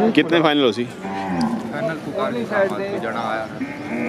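A cow mooing: one long, low call starting about a second in and lasting a couple of seconds.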